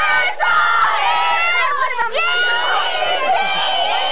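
A group of children shouting and cheering together, many high-pitched voices overlapping loudly.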